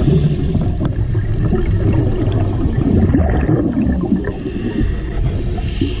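Scuba diver's exhaled bubbles from the regulator, a continuous low gurgling rumble heard underwater through the camera housing.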